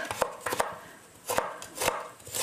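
Kitchen knife chopping food on a cutting board: a few separate, unevenly spaced strokes.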